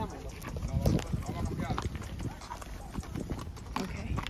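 Horses' hooves clip-clopping on a dirt and grass trail as a string of saddle horses moves along, in irregular, uneven strokes.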